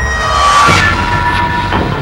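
Film-trailer soundtrack: a loud sustained drone of several steady tones over a low rumble, swelling about half a second in, with a few sharp hits in the second half.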